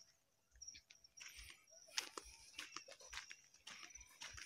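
Near silence with faint footsteps on a sandy dirt track, soft irregular thuds about twice a second.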